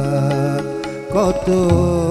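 Harmonium playing held notes in an instrumental interlude of a Bengali devotional song. About a second in, a melody line with wavering, gliding pitch comes in over it.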